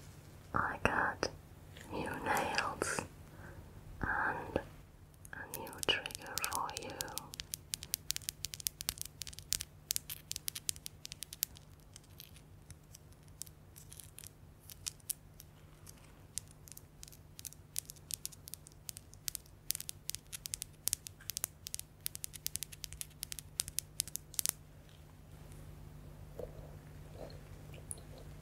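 Soft whispering for the first several seconds. Then long artificial fingernails tap and click against each other in quick, irregular runs of sharp clicks for most of the rest, fading near the end.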